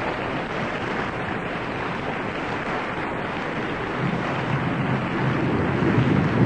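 Studio audience applauding, a dense steady clatter of many hands that swells slightly near the end.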